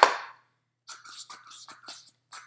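A loud, brief rush of noise at the very start, then short irregular clicks and squelches as a plastic Pop Chef squeezer is worked on its fruit-cutting tube, trying to push out a cantaloupe heart still stuck in the mold.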